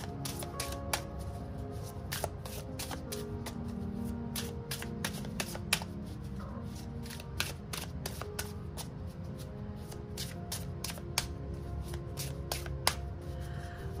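A small Lenormand card deck being shuffled by hand: a steady run of quick, irregular card clicks and riffles while the reader works the deck to draw three cards. Soft background music plays underneath.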